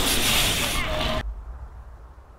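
BMX bikes riding past on the dirt track, a loud rush of tyre and riding noise that cuts off abruptly a little over a second in, leaving a faint low rumble.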